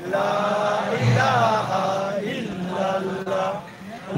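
A man chanting an Islamic devotional song into a microphone, in long, drawn-out melodic notes with pitch glides, and a short break near the end.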